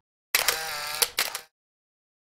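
A short intro-transition sound effect: a sudden swoosh with a bending pitch, ending in two sharp clicks about a second in, with silence before and after.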